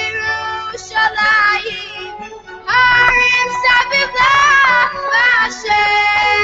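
A Hebrew song playing: high voices sing a wavering melody, fuller and louder from a little before halfway.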